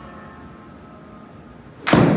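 A 4-utility hybrid golf club strikes a golf ball once near the end: a single sharp, loud crack at impact that rings on briefly, a good-sounding strike.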